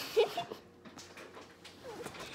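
A child's short, high-pitched giggle just after the start, then softer rustling.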